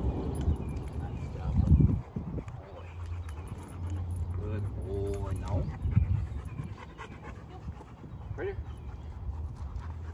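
Large dog panting, with a short whine about halfway through and a brief rising whimper near the end.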